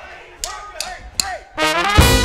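Count-in to a swing number: short called syllables with sharp clicks on the beat, about 0.4 s apart. About three-quarters of the way in, a trumpet enters with a rising phrase, leading into the band.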